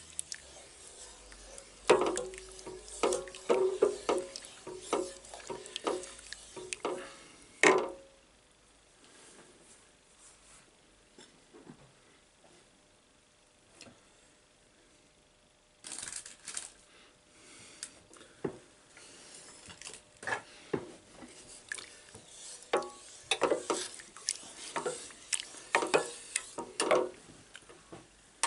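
Wooden spoon stirring a thick, bubbling cherry and cornstarch sauce in a stainless steel pot, knocking and scraping against the pot's sides and bottom. The stirring stops for several seconds in the middle, then starts again.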